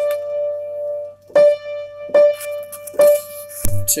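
Piano playing a held chord, then striking the same chord three times about once every 0.8 s. A short low thump comes near the end.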